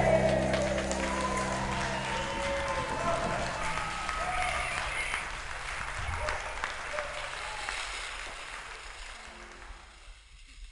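The last chord of an acoustic folk-pop song dying away, followed by applause and cheering that fade out steadily to near quiet.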